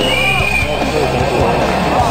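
Rock music playing, with voices mixed in.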